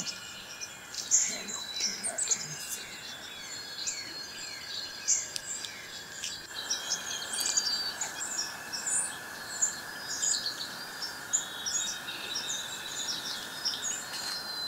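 Songbirds chirping and calling, with many short chirps and quick down-slurred notes throughout, over steady background noise that grows a little louder about halfway through.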